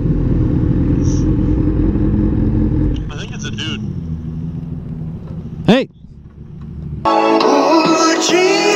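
Motorcycle engine running at low speed as the bike rolls in slowly, a steady low rumble that drops quieter about three seconds in. A short rising sound comes just before the end, and then a pop song with singing starts abruptly.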